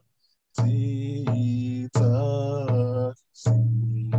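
A man singing a chanted song in long held notes, keeping a steady beat on a hide hand drum. Heard over a video call, the sound cuts abruptly to silence between phrases.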